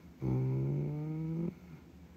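A man's low, drawn-out 'uhh', held at one steady pitch for over a second and then stopping.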